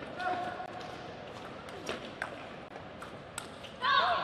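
Table tennis ball clicking off rubber bats and the table in a fast doubles rally, with sharp hits spaced irregularly. Near the end a loud shout goes up as the point is won.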